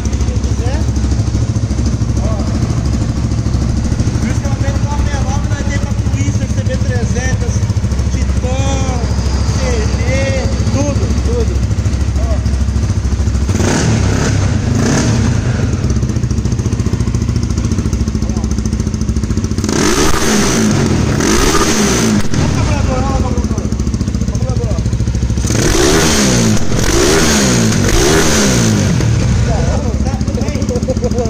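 Honda CBX 250 Twister single-cylinder engine, bored out to 288 cc for ethanol and breathing through a 969 aftermarket exhaust, idling steadily and then revved in three short bursts from about halfway through.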